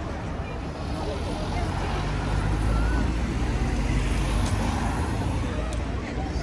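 City street traffic: a motor vehicle passing close by, its low engine rumble swelling about two seconds in and easing near the end, over a steady hum of traffic and voices.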